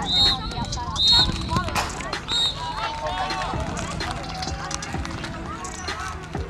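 Three short, high whistle blasts from a sports whistle in the first few seconds, over the chatter of children's voices on a soccer field.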